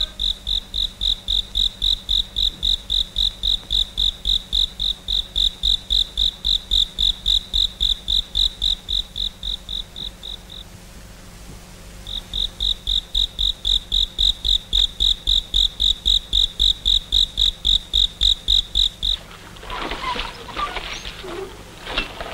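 A cricket chirping in a steady, even rhythm of about four to five high-pitched chirps a second. It breaks off for about a second and a half around ten seconds in, then resumes. About nineteen seconds in it stops, and water splashing and sloshing takes over.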